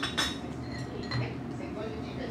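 Chopsticks and small ceramic dishes clinking on a table: two or three light clinks about a second apart.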